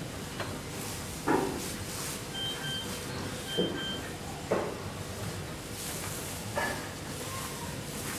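Quiet room tone with a faint steady hum, broken by a few short knocks and rustles spread through. Two faint, brief high tones come near the middle.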